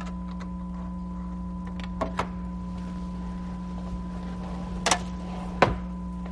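A few short sharp clicks and knocks of tuna cans being handled as their water is drained off: two about two seconds in and two more near the end, over a steady electrical hum.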